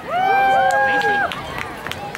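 Several high young voices cheering together in a held, high-pitched shout lasting about a second, with a few scattered claps.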